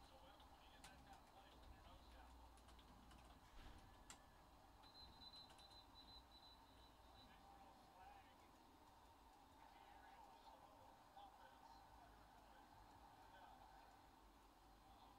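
Near silence: faint room tone with a few soft clicks early on, like typing on a computer keyboard.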